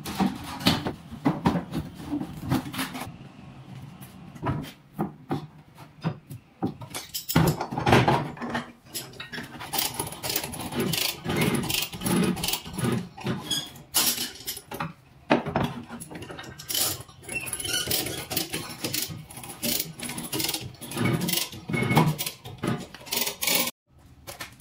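Irregular clattering knocks, clicks and rattles of hand work on a car's damaged rear end: plastic trim and tail-light parts being pried and pulled off, and a steel bar with a chain worked against the rear bumper beam.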